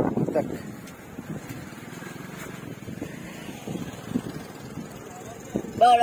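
A voice just after the start and again near the end, with faint outdoor background noise in between.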